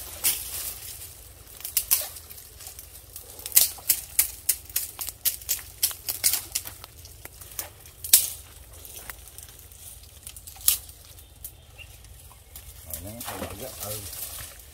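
Dry branches and twigs snapping and crackling as they are pulled and broken out of a pile of brush, a run of sharp irregular cracks, the loudest about three and a half and eight seconds in.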